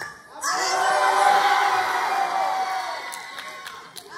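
A crowd of schoolchildren cheering and shouting. It breaks out suddenly about half a second in and dies away toward the end.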